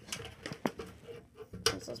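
Light handling noise from a plastic pet enclosure as its packed contents are pulled out, with two sharp clicks about a second apart.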